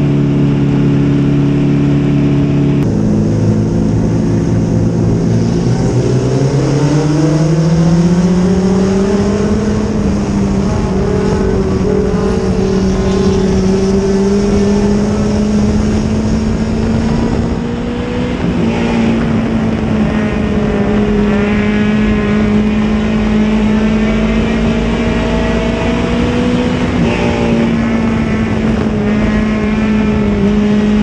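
Engine of a Pony-class dirt-track race car heard from inside its cockpit, running flat out: after a few steady seconds the pitch climbs as the car accelerates, then holds a high, steady note at racing speed, easing off briefly past the middle.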